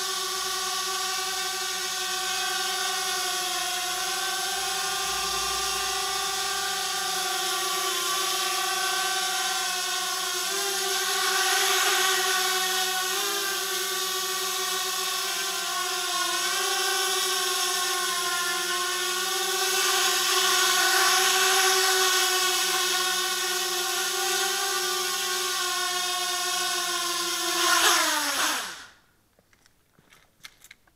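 Motors and propellers of a QAV250-clone 250-size quadcopter hovering, a steady whine whose pitch wavers as the throttle shifts, swelling louder around twelve and twenty seconds in. Near the end the motors spin down with a falling pitch and stop as the quad sets down.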